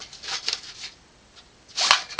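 AR-15 magazine being drawn out of a nylon magazine pouch: a scratchy rubbing of magazine against fabric in the first second, then a short sharp noise near the end.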